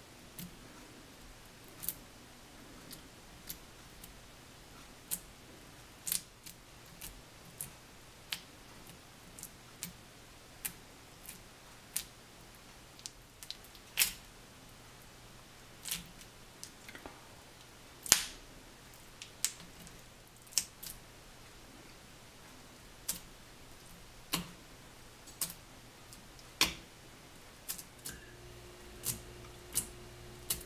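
Uncapping fork's metal tines pricking into a honeycomb and lifting off the wax cappings: sharp, irregular clicks and short scratches, roughly one a second, with a few drawn out into longer scrapes.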